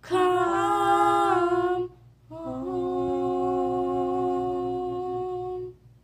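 Unaccompanied female voice singing a slow hymn, holding two long notes, the second longer than the first and fading out near the end.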